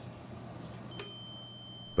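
Elevator arrival chime: a single bright ding about a second in that rings on and slowly fades, over a low steady hum.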